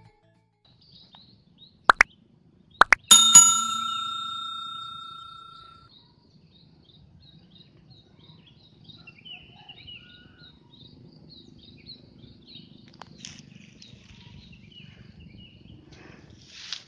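A couple of short clicks followed by a bright, bell-like ding sound effect that rings out and fades over about three seconds. After it, faint wild birds chirping in a pine forest, many short high notes over a low steady background.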